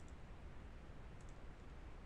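A couple of faint computer mouse clicks over a low, steady background hiss, as checkboxes in a form are ticked.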